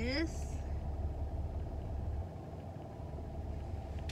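Steady low hum of a car idling, heard from inside the cabin; the deepest part of the hum drops away a little past halfway.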